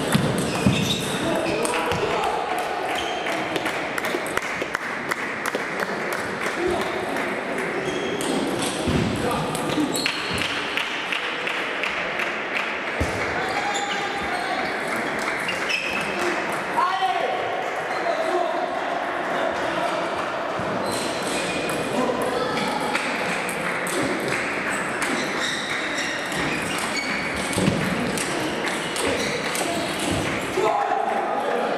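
Table tennis balls clicking off bats and tables in rallies, from the near table and others around it, over a steady background of voices.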